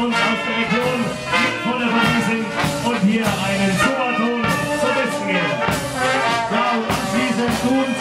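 A marching brass band playing a tune: trumpets and clarinet over tubas and baritone horns, with a bass drum keeping an even beat.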